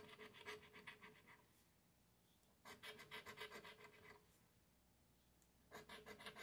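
A coin scratching the coating off a paper scratch-off lottery ticket: faint, rapid back-and-forth scraping strokes in three short runs with pauses between, the last starting near the end.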